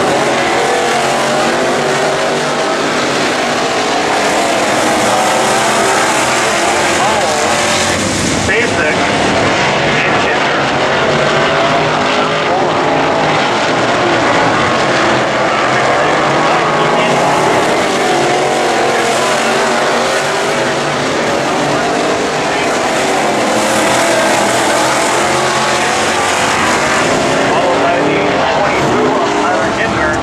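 A pack of Midwest Modified dirt-track race cars running at racing speed. Their V8 engines make a loud, continuous blend that rises and falls in pitch as the cars accelerate down the straights and lift for the turns.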